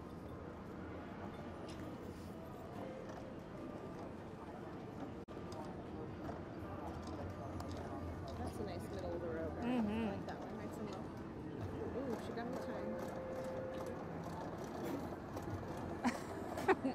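Casino floor ambience: a steady murmur of distant voices and machine hum, with a few brief steady tones and scattered light clicks.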